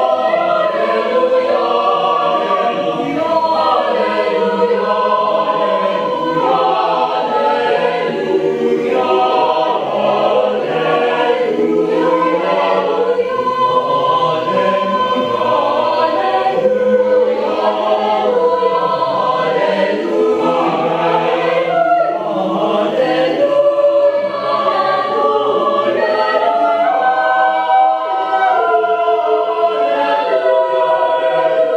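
Mixed choir of men's and women's voices singing a cappella, holding chords that shift from one to the next with no break.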